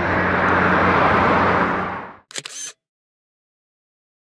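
Road traffic noise that fades out over about two seconds, then a single SLR camera shutter firing with a quick cluster of clicks, followed by silence.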